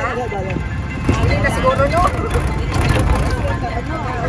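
Steady low rumble of a moving vehicle heard from inside the cabin, with voices over it near the start and again from about one to two seconds in.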